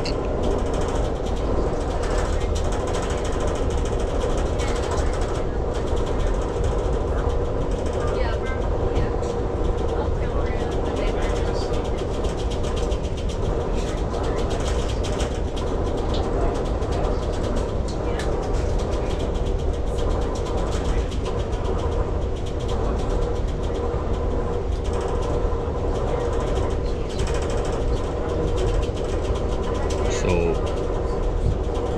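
Amtrak passenger train running at speed, heard from inside the coach: a steady rumble of wheels on rail with a constant hum and a few faint ticks.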